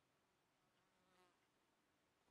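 Near silence, with one faint, brief buzz about a second in.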